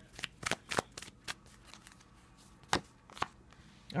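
A tarot deck being shuffled by hand: short, sharp snaps of cards striking together, several in quick succession in the first second or so, then two more near the end.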